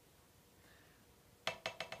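A single drumstick dropped onto a drum practice pad, bouncing in a quick run of light clicks about a second and a half in. The stick is held loosely at its pivot point so it rebounds freely off the pad.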